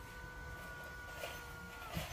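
Power sunroof's electric motor whining steadily as the glass panel slides open after a one-touch press, winding down in pitch and stopping near the end as the roof reaches full open.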